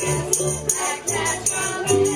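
Acoustic string band playing live: strummed string instruments keep a steady beat about three strums a second over a bass line, with a group of voices singing along.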